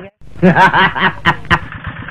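A person laughing: a quick run of short, up-and-down 'ha' sounds, loud, lasting just over a second after a brief dropout at the start, over the regular putter of a hand tractor's engine.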